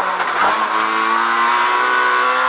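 Fiat Seicento Kit Car's four-cylinder engine heard from inside the cockpit, pulling hard under load. It drops from third to second gear about half a second in, then the revs climb steadily.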